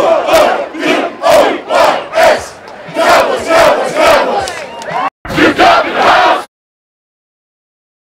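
Football players shouting together in unison, loud rhythmic bursts of men's voices, with a brief dropout about five seconds in. It cuts off suddenly about six and a half seconds in.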